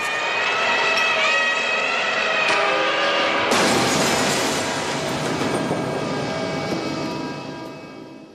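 A held, blaring tone for about three and a half seconds, then a sudden loud crash with glass shattering that slowly dies away.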